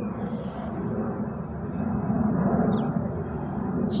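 Steady low background rumble with no breaks.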